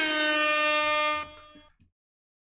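Air horn sound effect giving one long, steady blast that stops about a second and a quarter in and trails off briefly.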